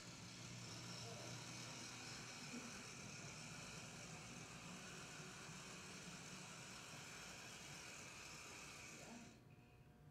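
HO-scale brass model diesel switcher running on its track, its motor and gear drive making a steady whir, a bit noisy. The sound cuts off suddenly about nine seconds in as the locomotive stops.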